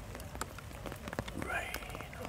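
Rain falling, with many separate drops tapping sharply close by at uneven intervals.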